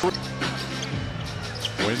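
Arena sound over the crowd after a made three-pointer: two long held tones, the second a little lower, over steady crowd noise.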